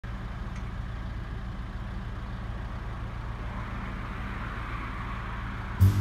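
Tractor engine running steadily at a constant speed, a low even hum. Jazz music cuts in just before the end.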